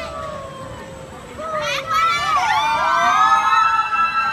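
Several riders on a chain swing carousel screaming in long, held, overlapping cries, with more voices joining about a second and a half in and the sound growing louder.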